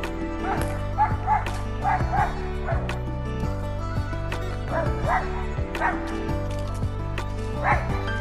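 A dog barking in short bursts, several quick barks about a second in, more around five seconds and one near the end, over background music with steady sustained tones.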